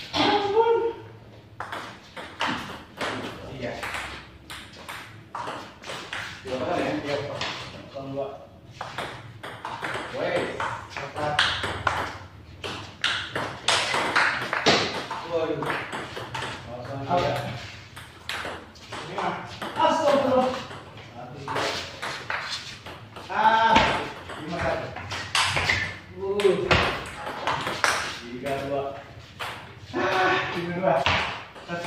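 Table tennis ball clicking off paddles and the table in quick back-and-forth rallies, with short pauses between points.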